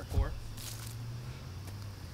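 A man says one word, then a steady low hum of outdoor background with a brief soft rustle about half a second in.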